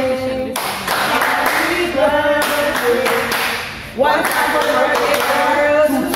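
A small group of waiters singing a birthday song together in held, chant-like notes while clapping along.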